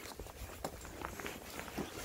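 Footsteps of a person walking, a few faint, irregular steps.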